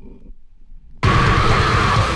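A sudden loud rushing, roaring noise starts about a second in, after a faint, quiet first second. It is a sound effect laid under the animated flaming title card.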